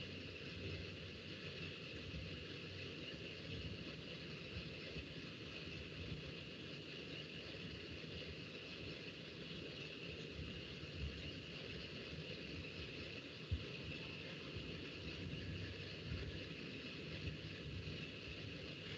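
Faint, steady background hiss of room noise through the lecturer's microphone, with one faint click about thirteen seconds in.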